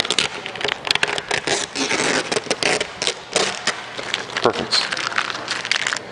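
Gloss vinyl wrap film being peeled off the car panel and crumpled, a dense crackling with many small quick clicks: the trimmed excess film around the fuel door being pulled away.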